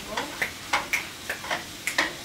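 A cooking utensil chopping and tapping against a frying pan as steak is broken into small pieces: quick, irregular clicks, about four a second.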